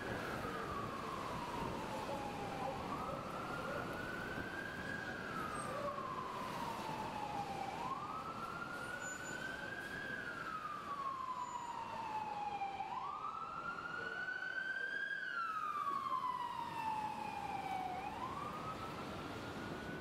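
Emergency vehicle siren in wail mode over steady city traffic noise. Each cycle rises over about two seconds and falls slowly over about three, repeating about every five seconds, and it is loudest about three-quarters of the way through.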